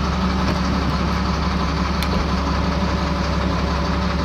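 A steady low mechanical hum, like an idling engine or running motor, with a faint click about two seconds in.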